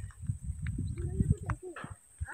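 Footsteps on a dirt road with handling of a hand-held camera: irregular low thuds and a few light clicks.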